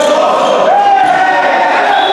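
Basketball play on a hall court: players' voices calling out across the court, with the ball bouncing on the wooden floor.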